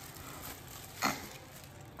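Soft crinkling of a plastic packaging bag being handled as a part is taken out of it, with one sharper rustle about a second in.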